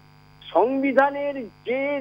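A caller's voice heard over a telephone line, cut off above the high frequencies, in two short stretches of speech, with a steady electrical hum on the line beneath it.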